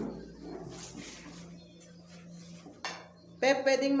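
Plates and a serving spoon clinking against a steel pot as food is dished out, with a sharp clink just before the last second. A person's voice comes in loudly near the end.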